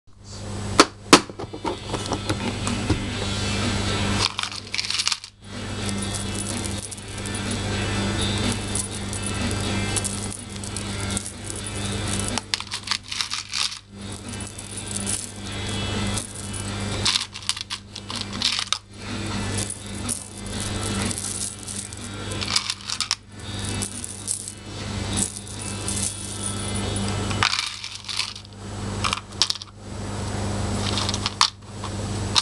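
Small metal charms and beads clinking and rattling as they are rummaged through and handled in a plastic compartment organiser box, with many small clicks and jingles, over a steady low hum.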